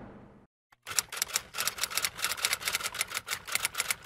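Typewriter key-click sound effect: a fast run of sharp clicks, about six a second, starting about a second in as text is typed onto the screen. It follows the fading tail of a whoosh.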